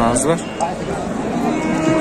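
Cattle mooing: one long, low moo in the second half, with voices nearby.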